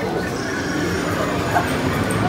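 Stroller wheels rolling over concrete pavement, a steady rolling noise.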